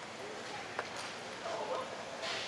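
Background voices talking faintly in an indoor arena, in short snatches, mostly in the second half, with two short clicks a little under a second in.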